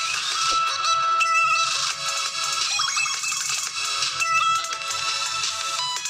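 An electronic music track playing loud through the single loudspeaker of an itel A25 phone, with little bass.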